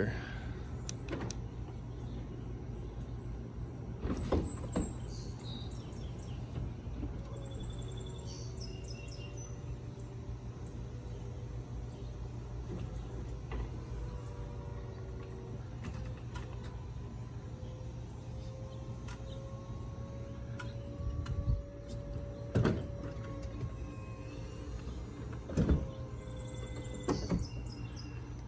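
BMW M3 convertible's power retractable hardtop folding down into the trunk: a steady low motor hum with clunks and clicks as the roof panels and trunk lid move and lock, the loudest about 4 s in and again in the last several seconds.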